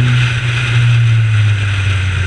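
Honda CRX race car's engine heard from inside the cabin, running hard at speed down a straight over road and wind noise, with its note dropping slightly about one and a half seconds in.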